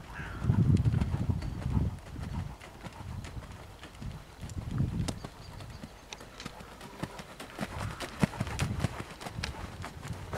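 Hoofbeats of a horse cantering on a soft arena surface: dull, repeated thuds that come louder in a run about half a second to two seconds in and again around five and eight to nine seconds.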